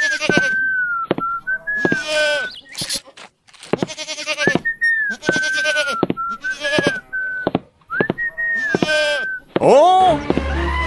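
Goat bleating repeatedly, the calls coming in three runs with short breaks, with a thin high wavering tone running through them.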